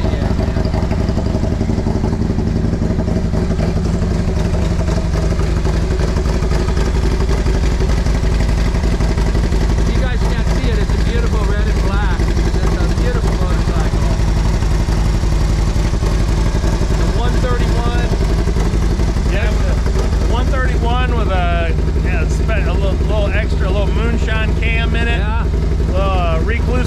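Harley-Davidson CVO Road Glide's 131-cubic-inch V-twin running steadily at idle just after being started, with voices talking over it.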